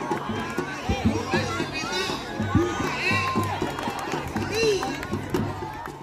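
Crowd of spectators talking and calling out together, many voices overlapping.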